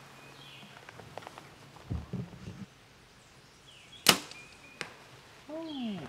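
A compound bow shot about four seconds in: one sharp, loud crack of the string release, followed under a second later by the fainter knock of the arrow hitting the distant foam 3D target.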